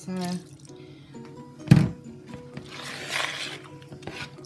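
A single loud knock a little under two seconds in, then a brief rush of liquid as milk is poured into a bowl of stiff muffin batter to loosen it, over faint background music.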